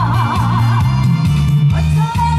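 A trot song performed live: a female singer holds a long high note with a wide vibrato that ends about a second in, over accompaniment with a steady bass rhythm.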